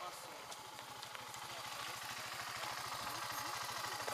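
Enduro dirt bike engine running at low revs, with an even pulse, growing louder as the bike rides up at walking pace and slows to a stop close by.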